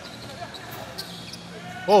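Basketball bouncing on a hardwood court, a few faint sharp bounces during live play.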